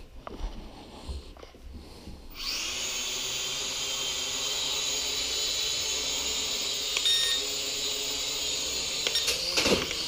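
Syma X5C quadcopter's four small coreless motors and propellers spinning up about two seconds in, then running as a steady whirring whine while it flies. A few brief knocks come near the end as it bumps into something.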